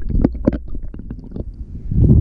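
Underwater sound heard through a camera housing: a low, muffled rumble of moving water with scattered short clicks and crackles.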